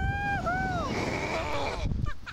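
A rider gives two long, high screams as the Slingshot reverse-bungee ride launches, then a rush of wind buffets the microphone as the capsule shoots upward.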